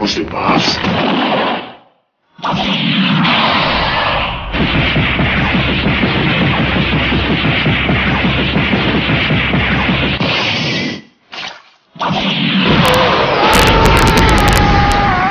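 Animated-fight sound effects: a long, loud rumbling blast, broken by brief silences about two seconds in and again about eleven seconds in. Background music plays under it.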